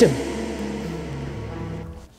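Background music: a line of held notes stepping downward in pitch, fading out near the end.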